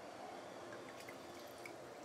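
Faint dripping of liquid in a wok of broth, with a few light ticks.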